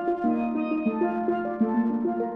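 Solo steel pans played with mallets in a jazz tune: a quick run of bright struck notes ringing over lower pan notes that sustain and repeat.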